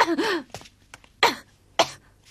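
A woman sobbing: a short, wavering cry at the start, then two sharp sobbing breaths, a little over a second in and near the end.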